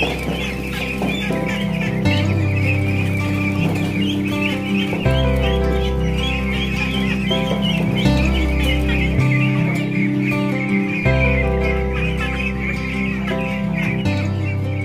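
A crowd of young ducks peeping continuously, a dense high chattering, over background music whose low notes change every few seconds.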